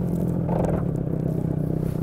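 30 hp outboard motor idling steadily with a low hum, with a brief rustle about half a second in.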